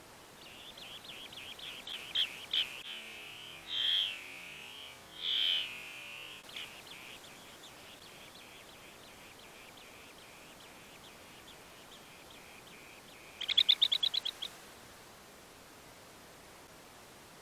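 Bee-eaters calling at their nest burrow: a run of quick, high chirps with two louder calls in the first half, then a fast, loud burst of about ten notes near the end.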